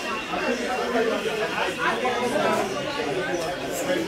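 Indistinct chatter of several people talking at once, no single voice clear.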